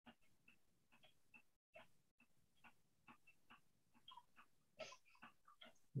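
Near silence: faint room tone with scattered soft ticks, and a slightly louder brief sound near the end.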